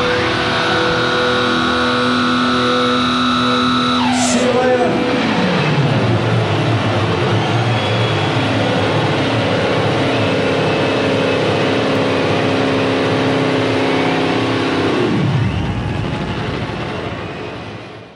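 Closing noise of a live rock band's electric guitars: held, droning feedback notes that dive steeply down in pitch about four seconds in, a new sustained chord, then a second dive near the end as the sound fades out.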